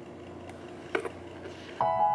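Quiet room tone broken by a faint click about half a second in and a sharper tap about a second in; piano music starts just before the end.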